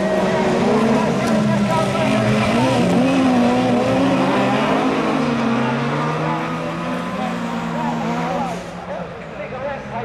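Several rallycross cars' engines running hard as the pack passes, the revs rising and falling through gear changes and corners. The sound drops away about eight and a half seconds in as the cars move off into the distance.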